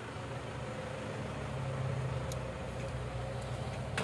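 Steady low hum over an even background hiss, with one faint tick about two seconds in.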